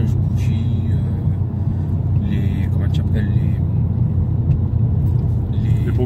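Steady low cabin rumble of a BMW M5 E39 on the move: its naturally aspirated 5-litre V8, fitted with a Supersprint X-pipe, running at an even cruise along with road noise.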